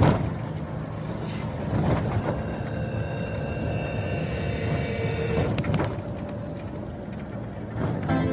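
Road and engine noise of a moving car heard from inside the cabin, a steady low rumble.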